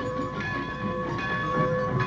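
Cartoon train sound effect: a steam-train whistle holding one steady chord over the rumble and clatter of the wheels as a train comes into the station.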